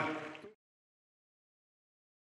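A man's voice fades out in the first half-second, then dead silence as the audio ends.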